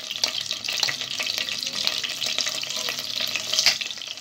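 Chopped garlic sizzling and crackling in hot oil, a dense patter of small pops with one louder pop near the end.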